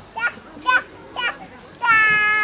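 A toddler's short, high-pitched babbling squeals: three brief ones, then a longer one near the end.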